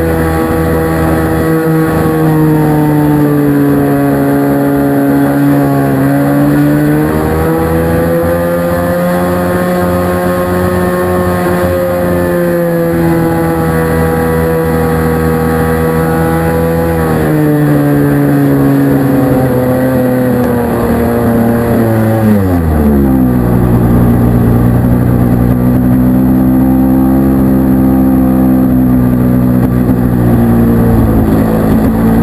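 Engine and propeller of an Extra 300 RC aerobatic plane, heard through a camera mounted on the plane, running hard. The pitch dips and recovers early on, holds steady, then drops sharply about three-quarters of the way in and stays lower.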